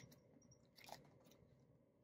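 Near silence: faint handling of paper cash envelopes and clear plastic binder pages, with one soft tap about a second in.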